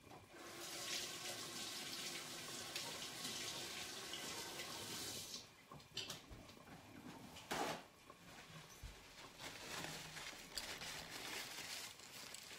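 Kitchen sink faucet running faintly for about five seconds while a measuring spoon is rinsed under it, then turned off. Two brief noises follow.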